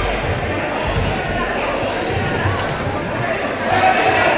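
A futsal ball thudding on a gymnasium's hardwood floor several times, under voices and crowd chatter echoing around the hall.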